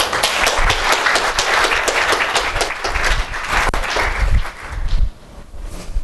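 Audience applauding, many hands clapping together; the applause dies away about five seconds in.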